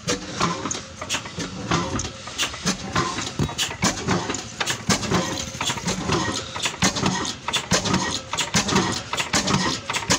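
Old single-cylinder stationary engine with a large flywheel, the flour mill's power source, running with a regular beat of about three knocks a second.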